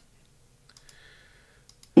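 Near silence broken by a few faint clicks and a faint, brief sound in the middle.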